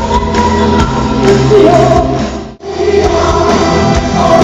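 Loud live rock music with a symphony orchestra and band, with female lead vocals and backing singers. The sound drops out sharply for a moment about two-thirds of the way through, where the recording cuts to another song.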